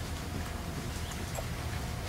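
Quiet background with a steady low hum and faint noise, and no distinct event.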